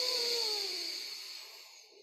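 A forceful breath through one nostril in alternate-nostril breathing, the other nostril held closed by the hand: a hissing rush with a faint whistle falling in pitch, fading away near the end.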